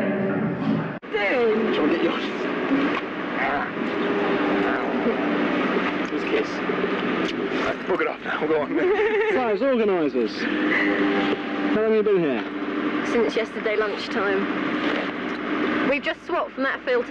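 Motorcycle engines running and revving among people talking, with a rise and fall in engine pitch about nine seconds in and again near twelve seconds.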